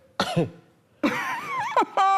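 A person clearing the throat, then about a second in a drawn-out vocal sound whose pitch wavers.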